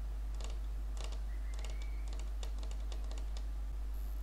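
Computer keyboard typing: an irregular run of key clicks, thickest in the second half, over a steady low electrical hum.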